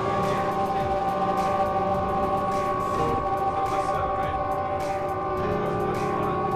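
A sustained electronic synthesizer drone: several steady tones held together like a chord, with the lower tones shifting about five seconds in and faint clicks scattered above.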